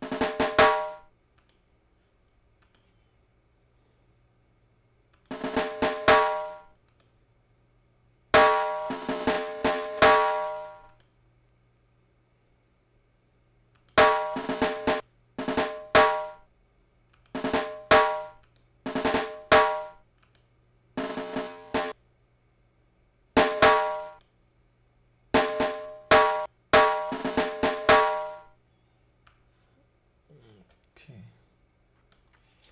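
Timpani samples auditioned one after another: about eleven short rolls and flams of pitched drum strikes, each ending in a fade, with short silences between them.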